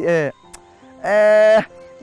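A man's speaking voice: a word trails off, a short pause, then one loud drawn-out vowel held steady for about half a second, over soft background music with sustained notes.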